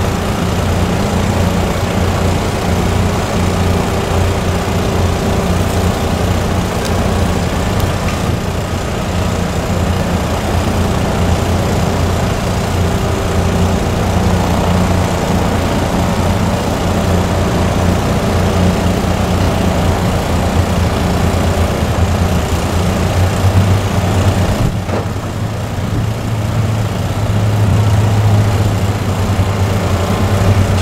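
An engine idling steadily with a constant low hum, which swells slightly near the end.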